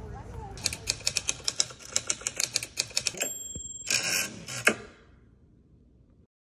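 Typewriter sound effect: a fast run of key strikes, then the ding of the carriage bell a little past three seconds in, then the carriage being swept back and a final loud clunk. It fades out near the end.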